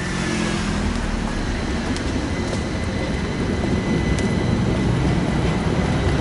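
Road traffic on a city street: a motor vehicle's steady engine and tyre rumble, growing slightly louder over the few seconds.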